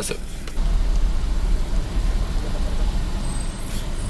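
Car-cabin rumble from the engine and rolling tyres, setting in about half a second in and holding steady as the car pulls forward in a drive-thru lane.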